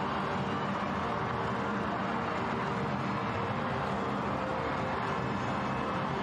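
Steady football stadium crowd noise at an even level, with no single shout or burst standing out.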